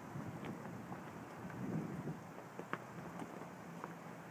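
Faint outdoor background noise, a steady low rumble and hiss, with a few soft clicks scattered through it.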